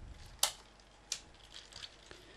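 Quiet background noise with two brief, sharp clicks about two-thirds of a second apart and a few fainter ticks.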